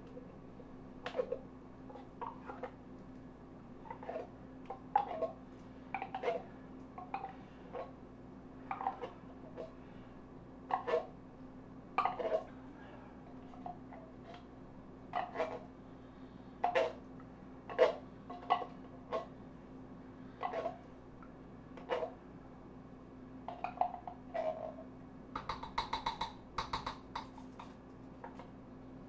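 A spoon scraping and knocking inside a metal soup can as thick condensed cream of mushroom soup is dug out, irregular clinks every second or so, some briefly ringing. Near the end comes a quick cluster of ringing taps.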